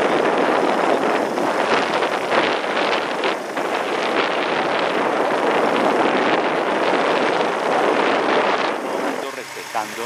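Rushing wind and road noise on the microphone of a camera riding in a moving vehicle, easing near the end.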